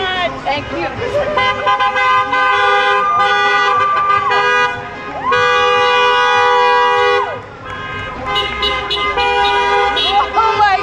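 Car horns honking in long held blasts from slowly passing cars: one blast of about three seconds, a second of about two seconds, then shorter honks near the end, with voices at the start and end.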